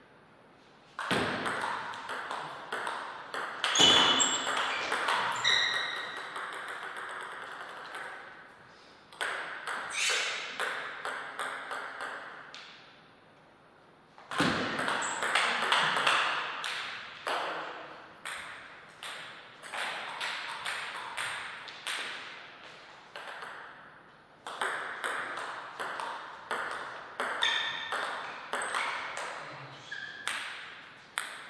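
Table tennis rallies: the plastic ball clicking off the rackets and the table in quick, uneven succession, with a short quiet gap between points about halfway through.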